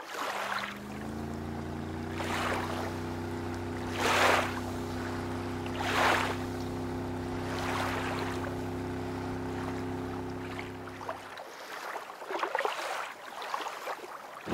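Lake water washing in soft surges about every two seconds, over a steady low hum that stops about eleven seconds in.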